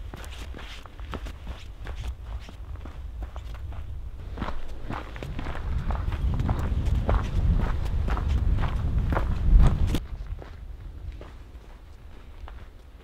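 Footsteps walking on a snow-covered trail at an even pace of about two steps a second. They grow louder about halfway through and stop abruptly about ten seconds in.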